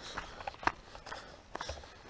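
Footsteps of a person walking across an asphalt road: faint, irregular taps and scuffs.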